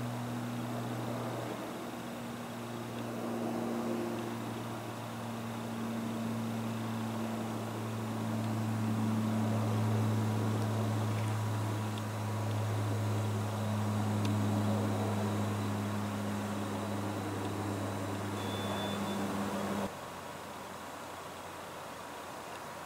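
Lockheed AC-130J Ghostrider's four turboprop engines and propellers overhead: a steady low drone that swells and eases as the aircraft circles. It cuts off suddenly about two seconds before the end.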